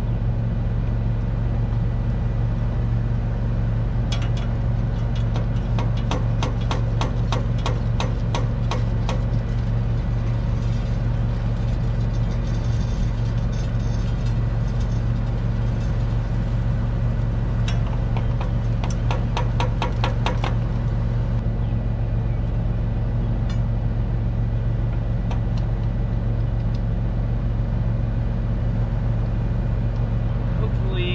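Tractor diesel engine idling steadily behind a hitched grain drill. Twice, about four seconds in and again near twenty seconds, a spell of rapid clicking comes from hand work on the drill's seed-metering parts.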